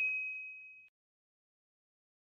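Ringing tail of a single bright 'ding' chime sound effect on an end card, holding one high note as it fades, cut off abruptly about a second in.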